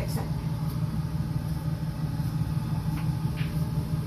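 A steady low rumbling hum runs throughout, with a few faint light clicks.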